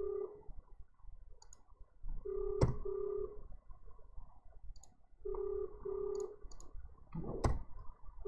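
Telephone ringback tone on an outgoing call, the Australian double ring: two short low tones in quick succession, repeated about every three seconds while the call goes unanswered. A sharp click comes about two and a half seconds in, and a louder knock near the end.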